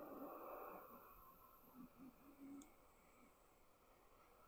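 Small handheld torch lighter burning with a soft, faint hiss while heating a metal stylus. The hiss dies down after about a second and a half, leaving near silence with a few faint low hums.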